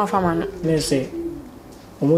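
A man speaking in short phrases, with a held vowel; the voice drops away near the end.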